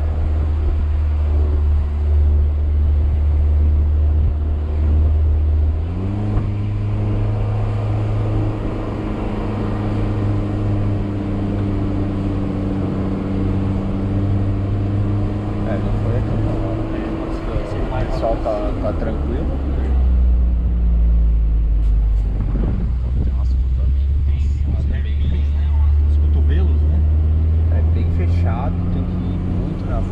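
A car's engine heard from inside the cabin while driving. Its note steps up about six seconds in and holds steady, drops around eighteen seconds, then rises again a few seconds later.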